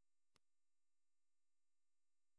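Near silence: a pause in the narration, with no sound of note.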